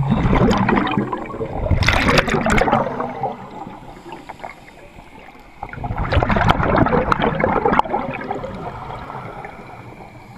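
Scuba regulator exhaust bubbles from a diver's exhalations, heard underwater close to the camera: a gurgling rush of bubbles in two long bursts, one at the very start lasting about three seconds and another starting about six seconds in, with quieter stretches between breaths.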